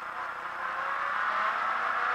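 Renault Clio rally car's engine pulling in second gear, heard from inside the cabin together with road noise, growing steadily louder as the car accelerates.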